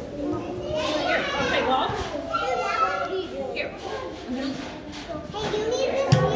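Children playing and talking with overlapping voices, in a large indoor room.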